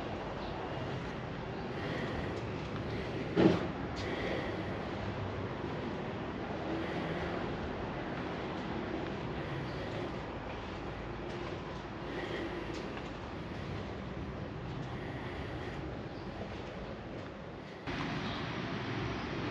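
Steady low rumble of background noise with one sharp knock about three and a half seconds in.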